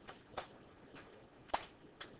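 Two short, sharp clicks about a second apart, the second louder, over faint room hiss.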